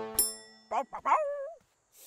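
A counter service bell dings once, its high ring fading over about half a second. A cartoon dog's short vocal sounds follow.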